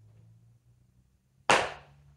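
A single sharp slap of hands about one and a half seconds in, dying away in under half a second.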